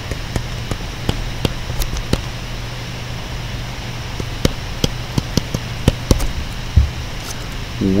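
A pen stylus tapping and ticking on a tablet screen while handwriting a word: a string of irregular sharp clicks over a steady low hum.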